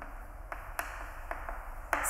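Chalk writing on a blackboard: about five sharp taps and clicks as the chalk strikes and scratches the board, forming letters.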